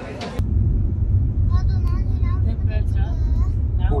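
Steady low rumble of a car driving, heard from inside the cabin. It starts abruptly about half a second in, with faint voices over it.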